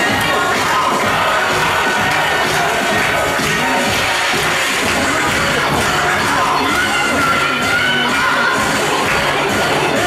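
Dance music playing for a cheer routine, with children's voices shouting and cheering over it at a steady, loud level.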